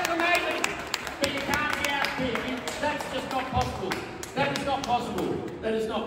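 Voices of a crowd and a man calling out in a large hall, with scattered sharp claps.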